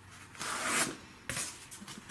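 Comic books being flipped through in a cardboard comic box: a sliding paper swish about half a second in, then a light tap and a few small ticks.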